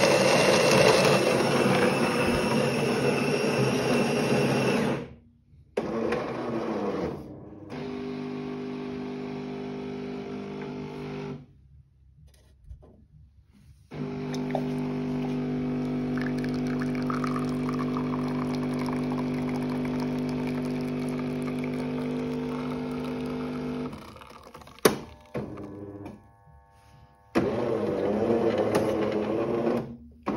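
Jura X9 super-automatic espresso machine grinding beans with a loud, even grinding noise for about five seconds. After short pauses its pump hums steadily for about ten seconds while espresso pours from the spout. Clicks follow, and a loud noisy stretch comes near the end.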